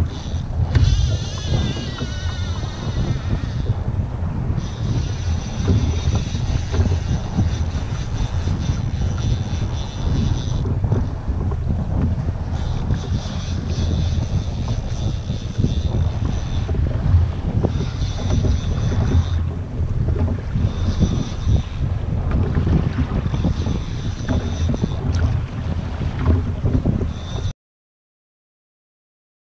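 Strong wind buffeting the microphone over a choppy sea, a heavy steady rumble. A thin high whine comes and goes in stretches of a few seconds. The sound cuts off suddenly just before the end.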